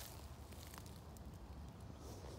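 Faint outdoor background with a steady low rumble and no distinct sound event.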